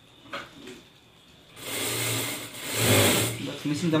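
Orbito industrial single-needle sewing machine running a short burst of stitching through fabric, starting about one and a half seconds in and stopping a little before the end.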